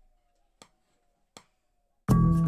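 Near silence broken by three faint, sharp clicks, evenly spaced about three-quarters of a second apart, over a faint steady hum.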